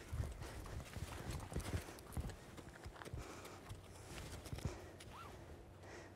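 Grey Arabian mare's hooves on the sand arena: a few soft, irregular footfalls as she walks and turns, mostly in the first two seconds or so.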